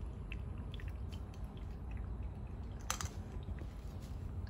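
Faint clicks and rustles of a plastic IV buretrol chamber and tubing being handled, over a low steady hum, with one sharper click about three seconds in.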